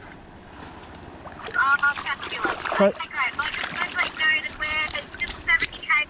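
A woman's voice coming faintly through a phone's speaker, thin and lacking low tones, talking from about a second and a half in. Before it there is only a low hiss of moving water and wind.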